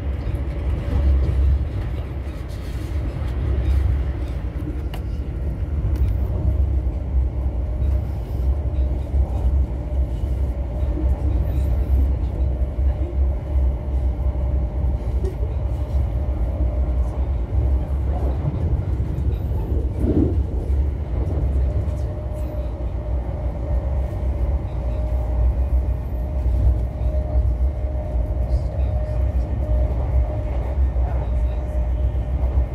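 High Speed Train (Class 43 power cars with Mark 3 coaches) running at speed, heard from inside a passenger coach: a steady low rumble of wheels on rail with a steady hum above it that weakens in the middle and comes back stronger near the end.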